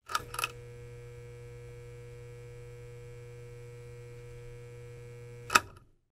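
Electrical hum of a neon sign, steady and low, after two short clicks as it flickers on. A single sharp click sounds about five and a half seconds in, and the hum cuts off with it.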